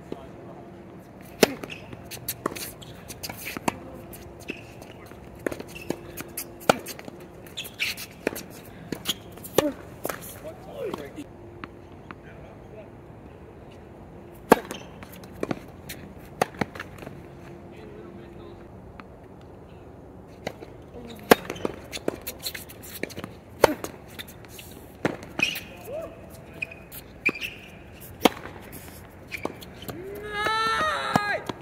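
Tennis rally on a hard court: racket strings striking the ball and the ball bouncing, a string of sharp pops at irregular intervals, with short squeaks from shoes on the court surface.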